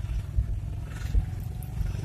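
Low, uneven rumble of a car heard from inside its cabin: engine and road noise.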